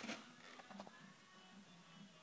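Near silence: faint steady low hum of room tone, with a few light clicks about half a second in.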